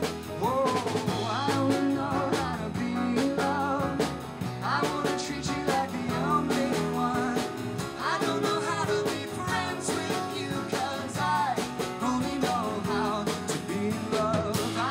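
Live band music: acoustic guitar, electric bass, piano and drums under a sung vocal line with vibrato.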